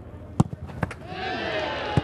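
A football kicked hard, one sharp strike about half a second in, followed by a lighter thud of the ball. From about a second in, players' voices shout as the penalty goes in.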